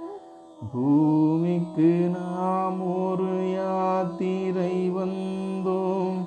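Devotional song: after a brief pause, a voice slides up into one long held sung note about a second in and sustains it, fading near the end.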